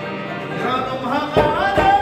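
Live Pashto folk music: harmonium and rabab playing, with two drum strokes in the second half and a man's voice rising into song about halfway through.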